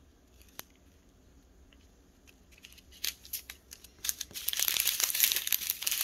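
Clear plastic packaging being handled, crinkling loudly from about four seconds in, after a few seconds of near silence with a few small clicks.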